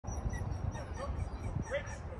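A dog giving a few short, high-pitched whines or yips, about a second in and again near the end, over a steady low rumble.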